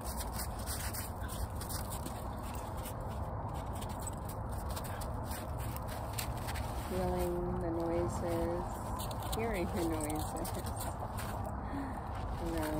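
A woman's voice saying a few slow, drawn-out words about seven seconds in and once more near ten seconds, over a steady background of rumble and hiss.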